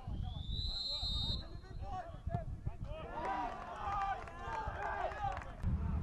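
A referee's whistle blown once for a set-piece free kick: a single shrill blast that rises in pitch and lasts about a second and a half. It is followed a couple of seconds later by players shouting on the pitch, with wind rumbling on the microphone.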